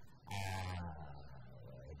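A person's voice: a brief breathy hiss, then one long, low-pitched held hesitation sound that slowly fades, between spoken words.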